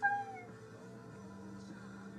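The tail of a short, high-pitched, meow-like cry that slides down in pitch and fades about half a second in, over soft background music.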